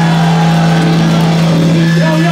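Live hardcore punk band playing loudly through amplifiers, with distorted guitar and bass holding a steady low note.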